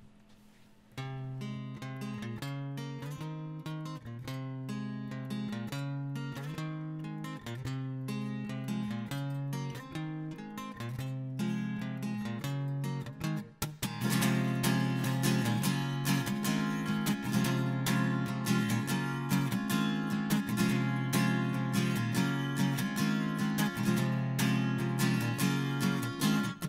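Solo acoustic guitar intro. Single picked notes begin about a second in, and the playing turns to louder, fuller strumming about halfway through.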